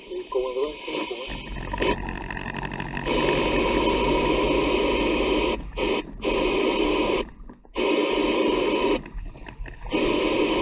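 CB radio loudspeaker in a lorry cab giving out a loud, crackling, noisy transmission from about three seconds in, cutting out briefly twice and stopping near the end.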